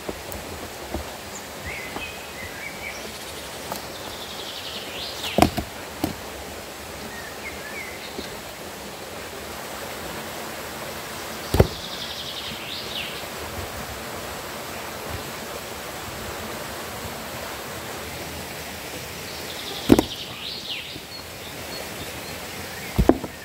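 Rocks being set onto a dry-stacked stone wall: a few sharp stone-on-stone knocks, one about five seconds in with a second just after, another near the middle and one near the end, over a steady outdoor hiss.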